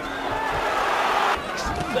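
Boxing arena crowd noise swelling into a brief roar as a punch lands, cutting off suddenly about a second and a half in, with a murmur of voices around it.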